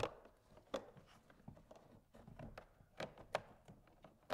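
Plastic door trim panel of a Ford F-250 being handled against the door as wiring is fed through it: faint rustling with a few light knocks and taps scattered through, the sharpest near the end.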